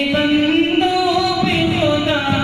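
A man singing an Urdu nazm solo into a microphone, in long held notes that step and bend in pitch.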